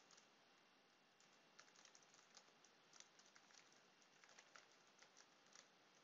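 Faint computer keyboard typing: a run of irregular key clicks.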